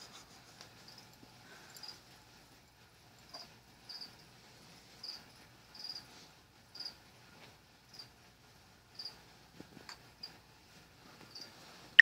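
Great Dane puppy sucking on a plush lamb toy: short, high-pitched sucking noises that repeat about once a second.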